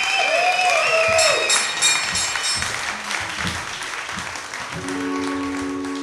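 Audience applauding and cheering, with a high held whistle, for the first few seconds. About five seconds in, an acoustic guitar chord rings out steadily.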